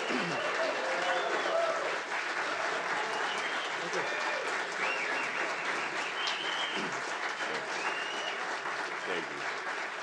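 Audience applauding steadily, with voices calling out and whooping over the clapping; the applause eases slightly near the end.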